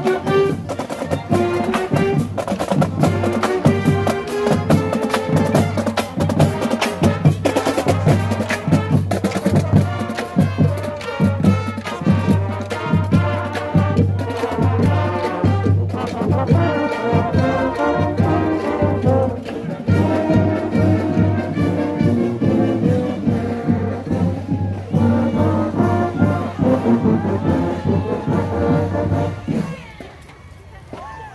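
High school marching band playing as it marches past: saxophones and clarinets over a steady drum beat, then sousaphones and trumpets. The music drops away sharply at the very end.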